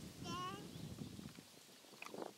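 A horse grazing close by, tearing and crunching grass in a run of low, rough crunches that die away about halfway through.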